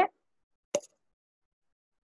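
A single short click about three quarters of a second in; otherwise silence.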